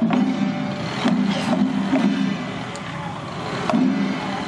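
Street procession din: sharp irregular clacks and knocks over a low, recurring rumble, with music in the mix.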